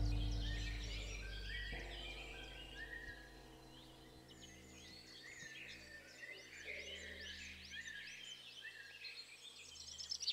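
Many small birds chirping in woodland, short rising calls throughout, over a low sustained musical drone that is loudest at the start and fades away over the first few seconds.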